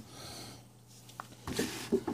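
Mostly quiet room, with faint breath sounds, a soft tick about a second in, and a short knock near the end as hands take hold of a large cardboard figure box.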